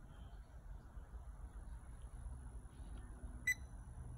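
Quiet low room hum with one short electronic beep about three and a half seconds in.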